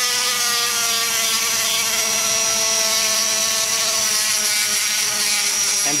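Die grinder running steadily at high speed, spinning a cartridge sanding roll against the wall of a cast aluminium LS cylinder head's exhaust port to polish it. It makes a steady whine with a thin, high tone on top.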